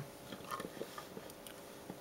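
Faint handling noise: a few small, irregular clicks and taps as the plastic-windowed doll box and the camera are moved about, over a low steady hum.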